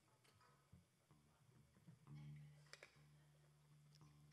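Near silence: a few faint clicks, and from about two seconds in a faint low steady hum.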